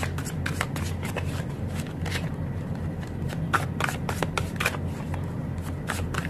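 A tarot deck being shuffled by hand: a quick, irregular run of soft card clicks and slaps, over a steady low hum.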